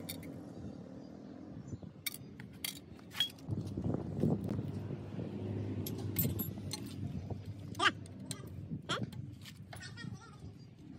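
Metal hand tools clinking and tapping against the rocker arms and cylinder head of an Isuzu four-cylinder engine: a scattering of short, sharp clinks. A low background murmur swells up through the middle.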